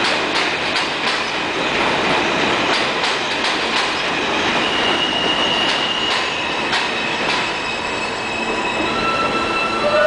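R160A-1 subway train rolling along elevated steel track: continuous wheel-and-rail noise with repeated clicks over rail joints and a steady high wheel squeal for about a second midway. Near the end the train slows almost to a stop and a whine from its propulsion equipment starts.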